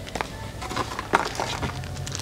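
Handling noise: several light clicks and rustles, the sharpest about a second in, over a steady low background hum.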